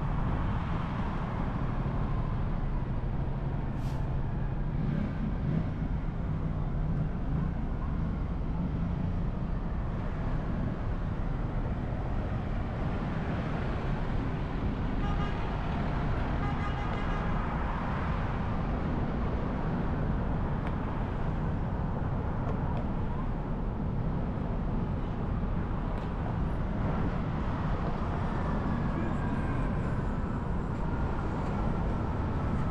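Steady road noise of a car driving through a road tunnel, with tyre and engine rumble heavy in the low end.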